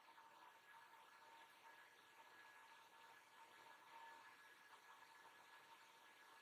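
Near silence: faint room hiss with a faint steady high-pitched whine.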